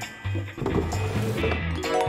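Background music with a stepping bass line.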